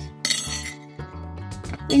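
Small metal jingle bells dropping onto a plate: one bright clink and jingle about a quarter of a second in, lasting around half a second, over background music.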